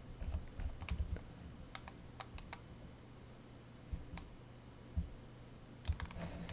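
Faint, scattered clicks from a computer's input devices during desktop editing work, about a dozen, most of them in the first couple of seconds, over a low steady electrical hum.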